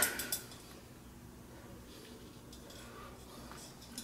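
A few faint clicks and scrapes of a thin wire being worked into a drip coffee maker's water-line fitting to clear out calcium buildup from the clogged line.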